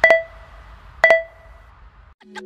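Workout timer's countdown beeps: two short electronic beeps a second apart, each ringing briefly, counting down the last seconds of an exercise interval.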